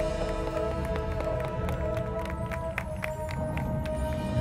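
Marching band playing a field show: a held chord, with a string of sharp mallet-percussion strikes from the front ensemble in the second half.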